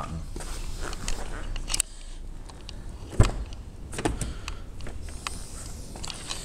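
Mercedes-Benz S320 door being locked with the button on its handle and then opened. A low hum runs for about the first two seconds, with a few clicks, and a sharp clunk of the door latch about three seconds in is the loudest sound.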